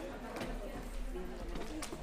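Indistinct chatter of people in a large hall, with a couple of light knocks.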